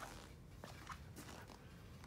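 Near silence: room tone with a few faint footsteps on a concrete floor.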